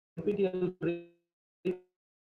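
Speech only: a man's voice over a video call, in short fragments cut apart by dead silence.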